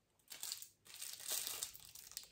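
Clear plastic packaging crinkling as it is handled, in two stretches of rustling: a short one about a third of a second in, then a longer one of about a second.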